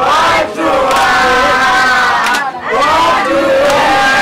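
A group of men chanting and shouting loudly together in long, drawn-out phrases with brief breaks, with hand claps among them.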